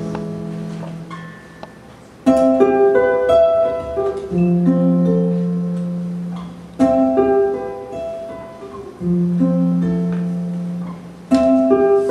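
Acoustic jazz guitar playing slow, ringing plucked chords, a new chord phrase struck about every four to five seconds and left to fade.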